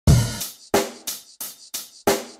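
Hip hop beat opening on the drum kit: a heavy kick-and-cymbal hit, then four sharper drum hits about a third of a second apart, each ringing out briefly.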